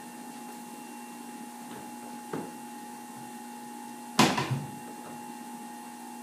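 A kitchen cupboard door shuts with a loud, sharp knock about four seconds in, after a fainter knock, over a steady electrical hum.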